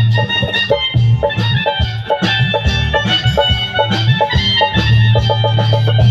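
Live band music at a steady beat: an instrumental passage of a Bengali song, with an electronic keyboard playing an organ-like lead over bass guitar and drums.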